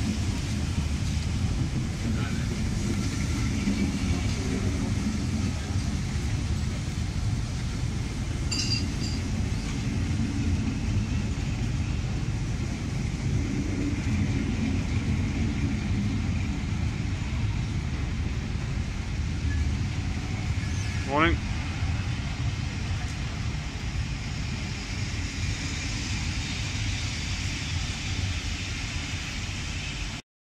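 Passenger coaches rolling past along a station platform: a steady rumble of wheels on the rails, with one brief rising squeal about 21 seconds in.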